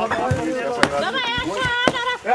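Two sharp blows of a hammer on masonry during demolition, about a second apart, over loud, raised voices of men shouting.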